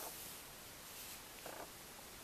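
Faint handling of a paper textbook's pages under a hand, with a light rustle, and a short faint sound about one and a half seconds in.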